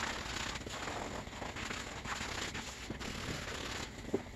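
Scrubbing pad rubbed by hand over a foam-covered vinyl seat cover: a steady wet rubbing noise.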